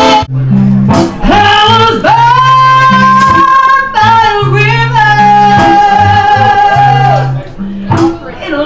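Live blues band: a woman sings long held notes, one of them wavering with vibrato, over electric bass and drums. A sudden break just after the start marks an edit from another band's performance.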